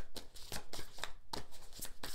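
A tarot deck being shuffled by hand: a quick, irregular run of short card slaps and rustles.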